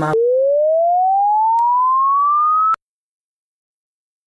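A single electronic sine tone gliding steadily upward in pitch, cut in over the clipped end of a sung line as a censor bleep, then stopping abruptly with a click.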